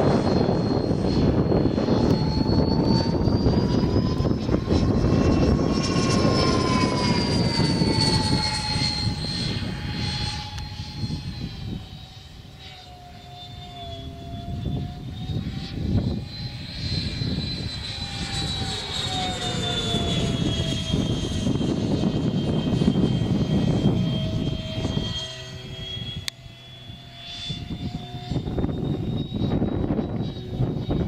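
Twin electric ducted fans of a Freewing Messerschmitt Me-262 RC model jet in flight: a steady high whine over a rushing noise. The whine rises in pitch for the first few seconds, then falls and fades as the jet passes and draws away, growing louder again near the end as it comes back round.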